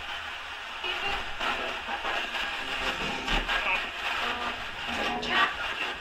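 Roberts portable digital radio playing broken snatches of music and voices.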